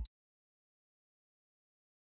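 Digital silence: the soundtrack goes completely blank as background music cuts off abruptly at the very start.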